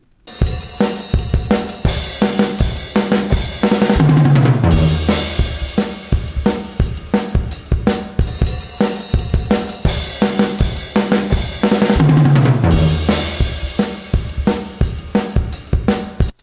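A multitrack acoustic drum kit recording played back with all its mics up: steady kick and snare with cymbals, and a tom roll stepping down in pitch to the floor tom about four seconds in. The same loop repeats, with the tom roll again about twelve seconds in. The low floor tom has quite a bit of buzz and ring to it, from worn heads that were not replaced.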